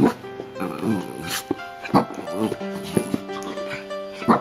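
A small fluffy dog giving a few short, sharp barks in play, over background music with held notes.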